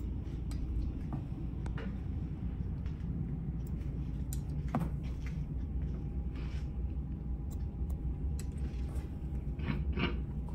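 Hair shears snipping and a comb drawn through wet hair on a mannequin head: scattered faint clicks and a few soft swishes over a steady low room rumble.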